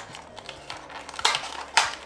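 A skincare product box being opened by hand and its container pulled out: light rustling and small clicks, with two sharper clacks about a second and a quarter and a second and three-quarters in.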